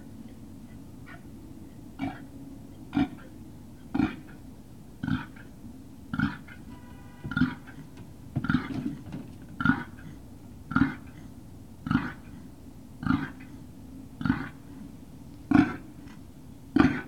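A dog barking off camera, one bark about every second, fourteen or so in a steady run.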